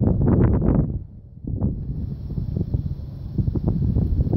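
Wind buffeting the microphone in gusts, dropping away briefly about a second in, then rising again.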